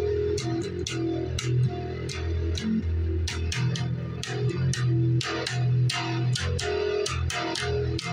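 Red electric bass guitar played fingerstyle: a busy line of low plucked notes, each with a sharp attack.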